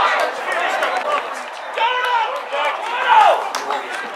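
Footballers shouting and calling to each other on the pitch, with one loud drawn-out shout about three seconds in and a few sharp knocks.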